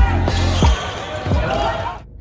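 Basketball dribbled on a hardwood gym floor: three bounces about 0.7 seconds apart, over the voices and noise of the arena.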